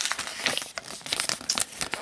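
Glossy paper instruction booklet crinkling as it is picked up and handled, a run of small irregular crackles.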